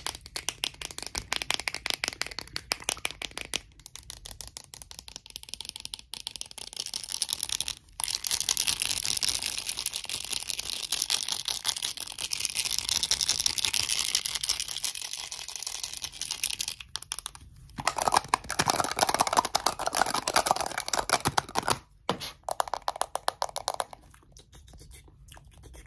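Short fingernails tapping and scratching fast on small cosmetic containers, a round black lid and a faceted glass perfume bottle with a metal collar. The taps come as dense rapid clicks with a few brief pauses, and turn lower and fuller near the end.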